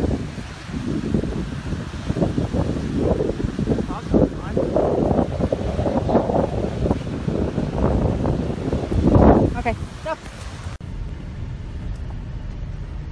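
Strong, gusting wind buffeting the microphone, with the surf of wind-driven Lake Michigan waves beneath it. The wind noise cuts off suddenly near the end.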